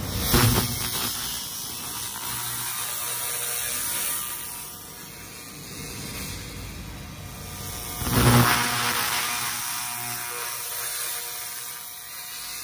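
Handheld 300 W pulsed fiber laser cleaning head firing on a coated metal plate at 50% power: a dense, rapid crackle as the coating is ablated. It swells louder about half a second in and again about eight seconds in.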